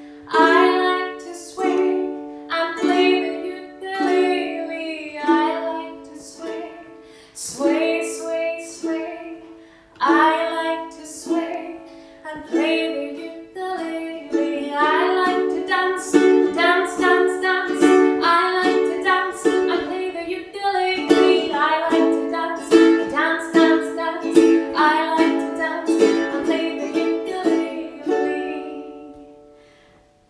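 Ukulele strummed in chords, with a woman singing along. The strums are spaced and left to ring at first, then come faster and fuller from about halfway.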